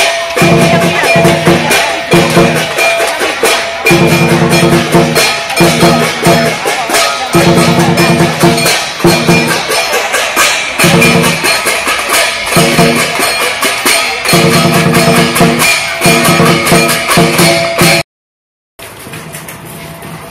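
Chinese drum-and-cymbal percussion playing a fast, loud, driving beat, of the kind that accompanies lion dances and kung fu demonstrations; it cuts off suddenly about eighteen seconds in, leaving only a much quieter background.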